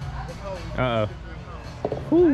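A short hummed voice sound about a second in, then a light putter click on a mini-golf ball near the end, over a steady low background hum.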